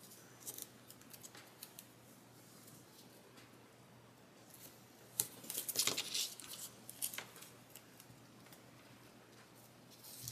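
Decorative washi tape being pulled off its roll and laid across paper: a few faint taps and handling noises, then a cluster of short, quiet peeling strokes about five seconds in and another near seven seconds.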